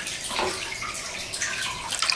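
Water splashing and sloshing in an aquarium as a fish net is swept through it to catch a burbot.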